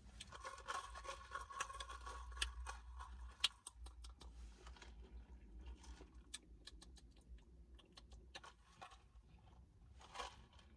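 Ice clicking and rattling in a plastic cup as an iced coffee drink is stirred with a straw, with a squeaky rubbing of the straw in the first three seconds or so.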